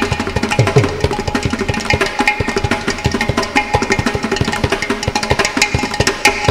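Mridangam and ghatam playing together in a fast, dense rhythm of drum strokes, the mridangam's bass head now and then giving a stroke that bends in pitch.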